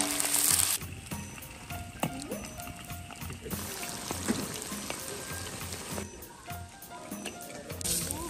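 Goose meat sizzling and being stirred in a hot iron wok: loud for about the first second, then much quieter. The sizzle rises again near the end.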